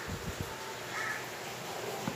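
Low background hiss with a faint bird call about a second in.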